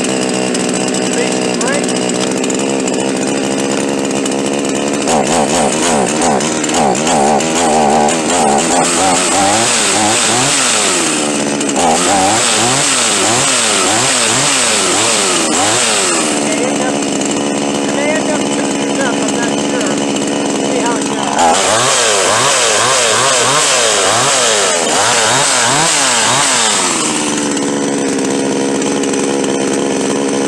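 Chinese 62cc clone chainsaw's two-stroke engine running just after a cold start. It idles steadily, then is revved up and down in a long series of quick blips, settles back to idle, is blipped again in a second series, and returns to idle.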